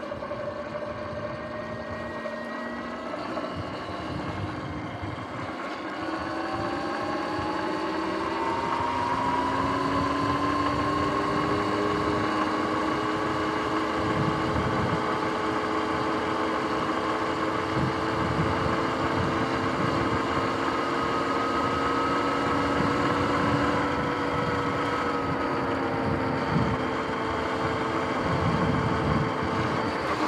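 Sur-Ron X electric dirt bike under way: its electric motor whine climbs in pitch and grows louder as the bike speeds up, between about six and ten seconds in, then holds fairly steady. Low wind buffeting on the microphone runs underneath.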